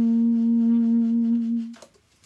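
Conn 6M alto saxophone holding one long, low, steady note, the closing note of a ballad, which stops about 1.7 seconds in.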